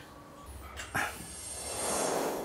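Quiet room tone broken by one short, sharp sound about a second in, then a rising whoosh that swells steadily into a scene transition near the end.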